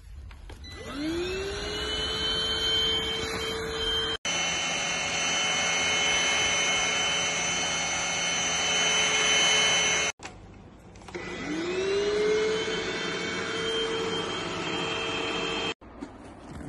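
Cordless stick vacuum cleaner motors running with a steady whine. About a second in, and again about 11 seconds in, a motor is switched on and winds up with a rising whine before it settles. Between them a different unit runs steadily with a higher whine.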